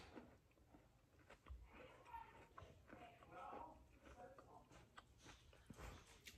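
Near silence, with faint scattered sounds of a person chewing a mini cookie.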